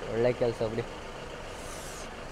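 Steady low rumble of an idling truck engine, with a few spoken words in the first second.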